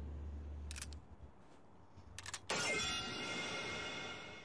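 Sound effects and music from a tokusatsu TV episode playing back: a short hiss and a couple of clicks, then, about two and a half seconds in, a sudden bright ringing electronic tone with many overtones that slowly fades.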